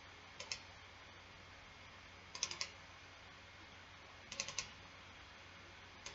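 Faint clicking from a computer keyboard and mouse being worked: two clicks about half a second in, then two quick clusters of clicks about two seconds apart, over a low steady hiss.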